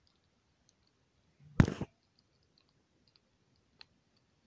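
Baby skunk crunching hard dry kibble: one short, loud burst of crunching clicks about a second and a half in, with a few faint ticks around it.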